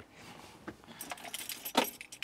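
A bunch of keys jingling, with a couple of small knocks. It starts about a second in, after a quiet start.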